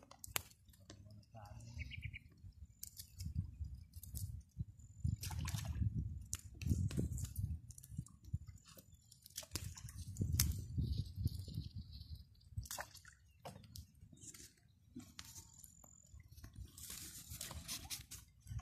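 Uneven low rumble with many scattered sharp clicks and crackles around a smouldering bed of charcoal embers.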